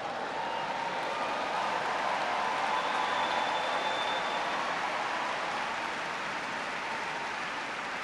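A large audience applauding, building over the first few seconds and then easing slightly.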